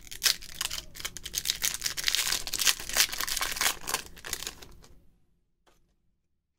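Foil Pokémon booster pack wrapper being torn open and crinkled by hand: a dense run of crackles and small rips that stops about five seconds in.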